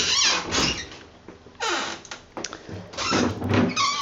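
Hotel closet doors being opened by their metal bar handles: three separate sliding, rolling movements of the doors.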